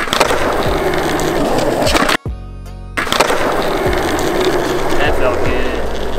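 Skateboard landing a hospital flip on a hard court: the board and wheels clack down right at the start, then the wheels roll on, with background music over it.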